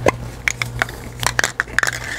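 Aerosol spray paint cans being handled, giving a run of irregular sharp clicks and taps.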